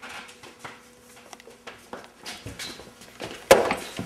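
Light shuffling and knocking, then about three and a half seconds in a single sharp whack as a long tube swung like a bat strikes a person, followed by a brief scuffle.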